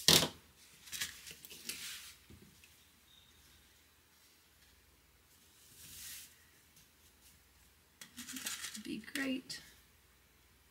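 Cloth being handled and pinned on a cutting mat: a sharp click at the very start, rustling about a second in, a soft rustle about six seconds in, and a cluster of rustles and small taps near the end.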